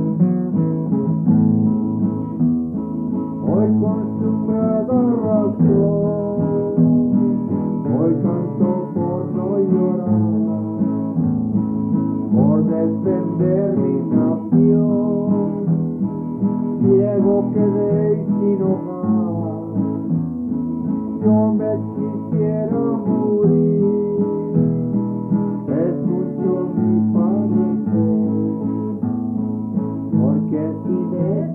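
Acoustic guitar playing a Hispanic folk song, strummed chords under a picked melody.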